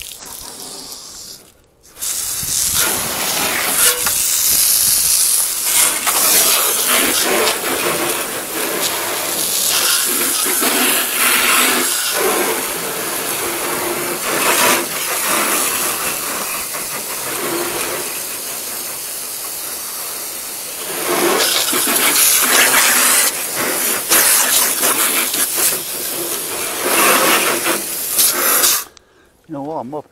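Garden hose spraying water onto a van's roof: a loud, rushing spray that starts about two seconds in, rises and falls as the stream moves across the roof, and cuts off suddenly shortly before the end.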